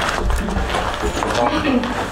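An indistinct voice, with the low rumble of a handheld camera being swung and handled.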